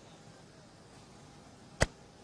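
A single sharp click near the end, brief and much louder than the faint outdoor background.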